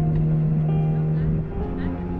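Bowed cello playing slowly: a long sustained low note that moves to a new note about one and a half seconds in.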